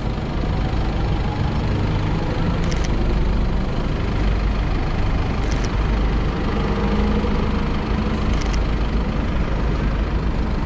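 Busy city street traffic: vehicle engines idling and running close by in a steady low rumble.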